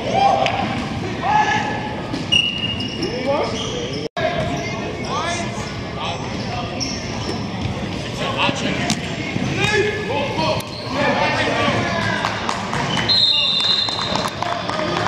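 Players shouting and calling out, echoing in a large indoor hall, with the sound cut off for an instant about four seconds in. Near the end comes a short, steady whistle blast, a referee's whistle ending the play.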